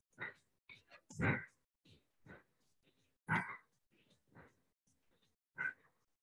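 A woman breathing hard while squatting and pressing dumbbells overhead: short, breathy exhales at irregular intervals of roughly a second, the two loudest about a second and about three seconds in.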